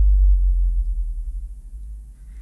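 A deep 808 sub-bass note with a falling pitch, soloed with a long low-end reverb (a 'sub splash') that extends its bottom-end sustain. It starts loud and slowly fades.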